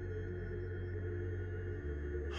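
Background music under a pause in narration: a low, steady ambient drone of held tones, its bass note changing near the end.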